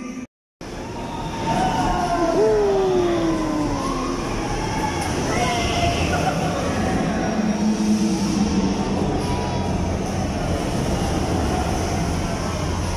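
The Riddler Revolution thrill ride running: a loud, steady mechanical rumble, with several long tones falling in pitch over it in the first few seconds and a few shorter ones later.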